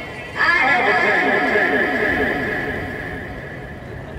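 Electronic sounds played from smartphones running a gesture-controlled performance app: a pitched, warbling sound starts suddenly about half a second in, wavers rapidly several times a second, and fades away over the next three seconds.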